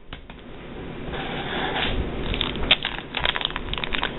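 Crinkling and rustling of plastic packaging as hands handle and stack clamshell packs of wax melts and pick up a wax tart in a clear plastic bag. It is a rough rustle that builds over the first two seconds, then becomes a quick run of sharp crackles.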